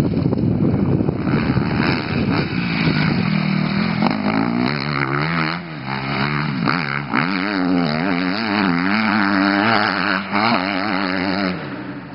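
A motocross bike's engine revving hard and shutting off again and again as the rider works the throttle over the jumps, its pitch rising and falling repeatedly. It drops away sharply near the end.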